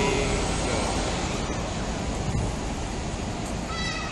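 Outdoor street ambience: a steady noisy rumble of distant traffic and wind on the microphone. A brief high-pitched squeal comes just before the end.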